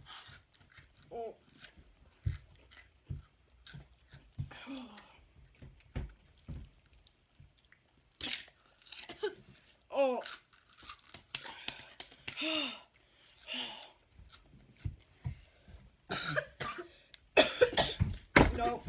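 Chewing and crunching of chili-and-lemon wheat pellet snacks, with coughing and short pained vocal sounds from the chili heat. The coughing is loudest near the end.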